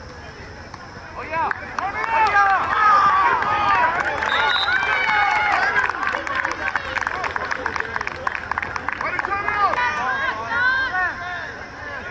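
A group of young voices shouting and whooping over one another, rising about a second and a half in and dying down near the end. Scattered sharp clicks run through the middle.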